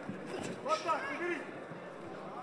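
A man's voice calling out, with steady hall noise underneath.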